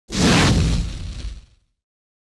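Logo-intro sound effect: a whoosh with a low boom that hits at once and fades away over about a second and a half.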